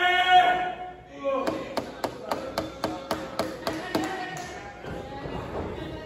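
A man's loud, held shout, then about ten sharp claps in a steady rhythm, about four a second, in a large room.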